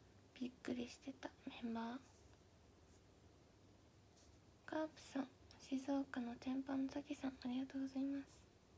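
A young woman's soft, murmured speech in two short stretches, about half a second in and again from about five seconds in, with a quiet room between.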